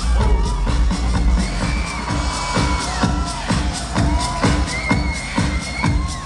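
Loud electronic dance music played over a club PA: a steady bass kick drum beat about twice a second under a high sliding synth melody, with crowd noise beneath.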